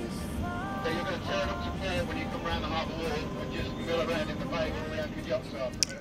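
A sailing yacht's inboard engine running steadily at low revs while the boat motors slowly around the marina, a continuous low rumble. Faint voices and music sound over it.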